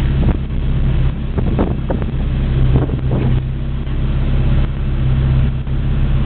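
Car engine running steadily at low revs while the car rolls slowly, heard from inside the cabin as a constant low hum.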